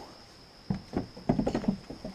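Goat hooves knocking on a hard platform deck, a quick irregular run of knocks that starts about two-thirds of a second in.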